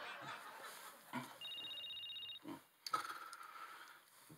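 Mobile phone ringing: a high, trilling ring about a second long, starting about a second and a half in.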